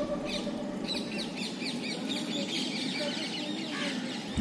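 Small birds chirping outside: a rapid series of short, high chirps over a faint steady background.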